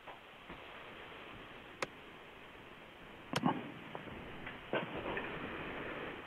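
Faint steady hiss from an open microphone on a narrow-band video-call line, with a sharp click about two seconds in and a short, louder knock a little after three seconds.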